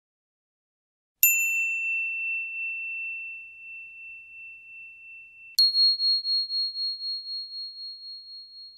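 Two struck bell-like chime tones. A lower ring comes about a second in and fades slowly, then a higher ring is struck about four seconds later and rings on with a pulsing, wavering level.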